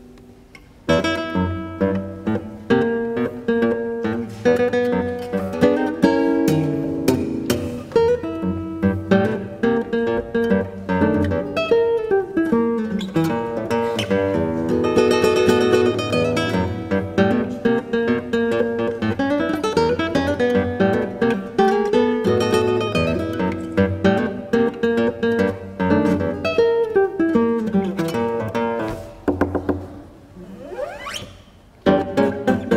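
Solo nylon-string classical guitar with a double top, played live: fast fingerpicked notes and chords with sharp accents, entering loudly about a second in after a quiet moment and dropping away near the end.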